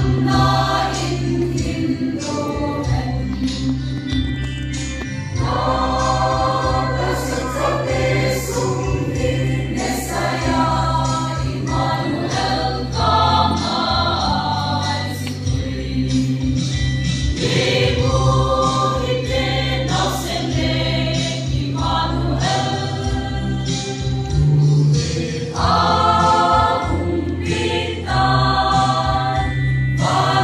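Mixed choir of men and women singing a church song in chorus, in phrases of a second or two, over a steady, sustained low electronic keyboard accompaniment.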